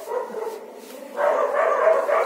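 Dogs barking, with one long drawn-out call starting a little after a second in.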